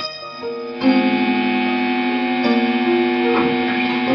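Solid-body electric guitar being played: a few separate picked notes, then louder sustained notes from about a second in, with one note bent in pitch about three seconds in.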